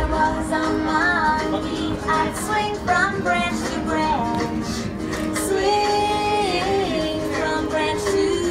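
A children's action song: a woman singing over plucked-string accompaniment, with sung notes bending and held.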